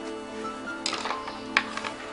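Background music with sustained notes, over which a spoon clinks against a mug as tea is stirred: a few light clicks in the second half, the sharpest about halfway through.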